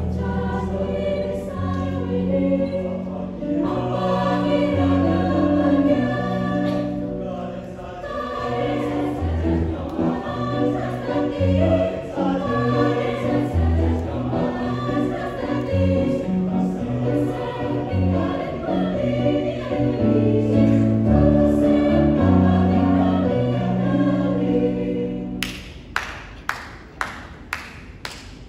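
Mixed choir singing in parts, with held low bass notes under the moving upper voices. Near the end the singing drops away and sharp hand claps begin.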